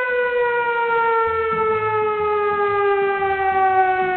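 A siren sounding one long tone that slowly falls in pitch as it winds down.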